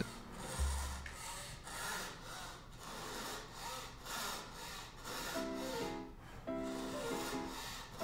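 Fine fretsaw blade of a marquetry chevalet cutting through a packet of green-dyed sycamore sliced veneer, with a steady rhythm of short rasping strokes. Soft background music with held notes comes in about five seconds in.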